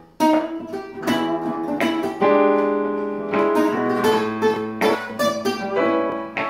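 A nylon-string classical guitar and a digital piano playing a blues in E. Notes and chords come on a regular beat, with a chord held for about a second in the middle.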